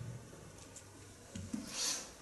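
A Bible handled at a wooden pulpit: a couple of soft knocks about one and a half seconds in, then a brief rustle of paper pages near the end.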